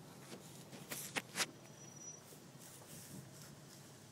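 Low engine and tyre noise inside a Toyota Prado's cabin as it crawls along a rough dirt track, with three sharp clicks or knocks in quick succession about a second in.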